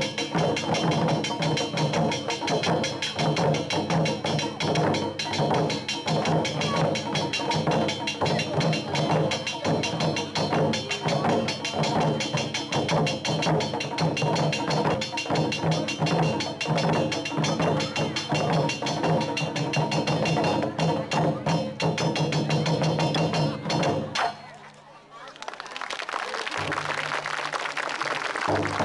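Japanese taiko drum ensemble playing, with rapid drum strokes and rim or wood clicks over sustained tones. The drumming stops abruptly about four seconds before the end.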